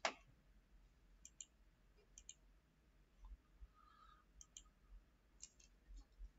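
Faint computer mouse clicks, about four quick double clicks with near silence between.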